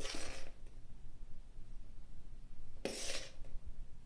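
A metal spoon scraping flour from a mixing bowl twice, each scrape about half a second long, the second near the end.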